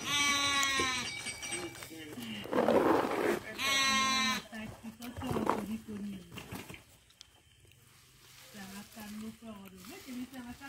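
Sheep bleating: two long, wavering bleats, one at the start and another about four seconds in. Between them comes a short, louder burst of noise.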